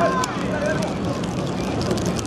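Raised voices calling out over the steady outdoor noise of a football match.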